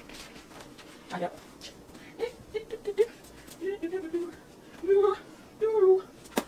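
A domestic cat meowing several times in short, high calls, starting about two seconds in and loudest near the end.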